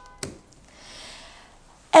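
A single sharp click as a DIN-rail miniature circuit breaker (air switch) is flipped on, switching the AC supply through to the setup.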